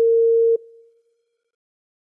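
An electronic beep, one steady pure tone, standing in for the missing last words of a recorded sentence in a listening test. It cuts off about half a second in and leaves a brief fading tail.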